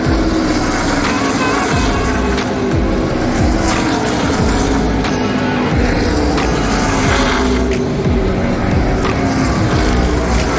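Race car engines running around the track during an ARCA race, a continuous loud drone with some rising and falling pitch as cars pass, mixed with background music.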